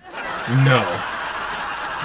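Sitcom studio audience laughing as a steady wash of crowd laughter, with one short spoken "No" about half a second in.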